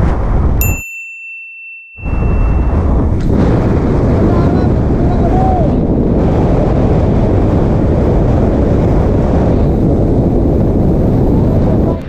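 Steady roar of wind buffeting the microphone of a camera riding on a moving motorcycle. About half a second in, a high ding sounds and the roar drops out for about a second, then returns.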